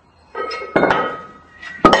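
Iron weight plates dumped off one end of a barbell clanging onto the floor: a loud metal clank under a second in and another just before the end, each ringing on. It is the bailout from a stuck bench press, tipping the plates off one side.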